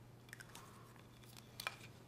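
Faint, scattered clicks and light handling noises of wood and tools on a workbench, the sharpest click about one and a half seconds in, over a steady low hum.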